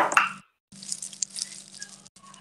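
A brief voice-like sound at the start, then faint hiss from an open microphone with a steady low electrical hum and a few faint ticks.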